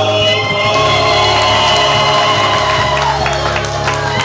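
Men's choir singing a gospel hymn, holding long sustained notes in harmony, with one voice sliding down in pitch a little after three seconds in.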